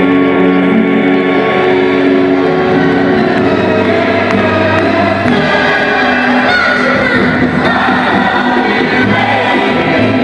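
A male singer singing through a handheld microphone over amplified backing music.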